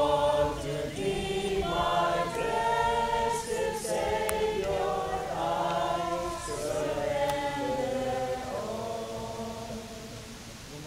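A group of voices singing a hymn together in slow, held notes. The singing fades near the end.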